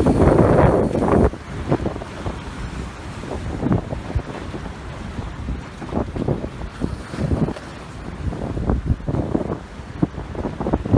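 Wind buffeting a phone's microphone, loudest for about the first second and then gusting unevenly, over the wash of surf against jetty rocks.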